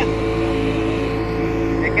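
Two-stroke outboard motor of a small boat running steadily under way, a constant hum of several steady tones over a low rumble.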